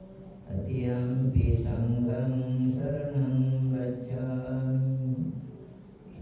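Theravada Buddhist monks chanting Pali in a low voice, holding long, steady drawn-out notes. The chant starts about half a second in and trails off near the end.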